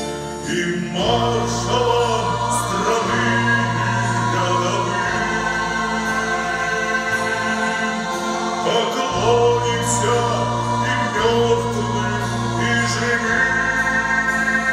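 A male soloist and a choir singing a Russian patriotic war song over instrumental accompaniment with sustained bass notes that change every second or two.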